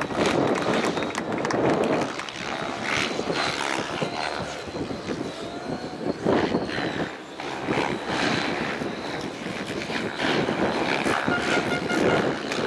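Electric RC 3D helicopter flying aerobatics at a distance. The rotor blades' whoosh swells and fades as it manoeuvres, with a faint high motor whine over it.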